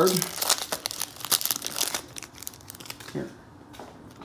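Foil wrapper of a Donruss football card pack being torn open and crinkled by hand: a quick run of crackles that dies away about two and a half seconds in.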